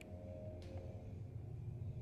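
Faint, steady low background rumble with no distinct event apart from a faint click about half a second in.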